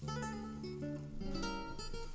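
Background music: acoustic guitar plucking and strumming chords.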